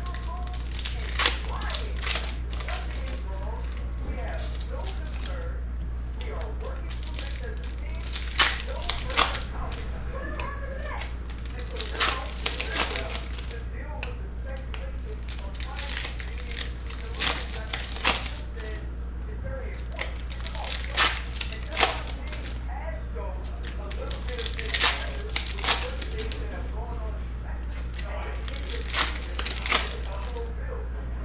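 Foil wrappers of Bowman University Chrome basketball card packs crinkling as they are torn open and handled, with cards slid out and flipped through. The crackles come in short spells every second or two, over a steady low hum.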